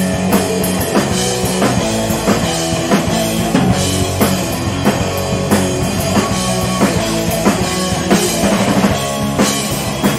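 Live punk rock band playing loud: two electric guitars, bass guitar and a drum kit driving a steady beat.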